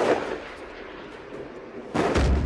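A single loud report of gunfire at the start, its echo rolling off the mountainside and dying away slowly; a second report comes near the end.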